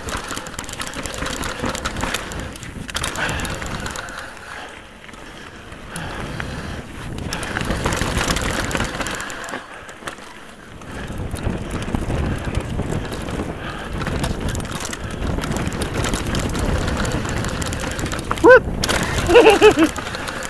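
Nukeproof Scalp downhill mountain bike running fast down a rocky trail: tyres rolling over loose stones and the bike rattling, mixed with wind rush on a chest-mounted camera microphone. The noise swells and eases with the terrain, dropping off briefly about four to six seconds in and again around ten seconds.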